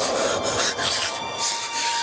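A man's rasping breaths, a few irregular strokes of breath noise, over a film score with held tones.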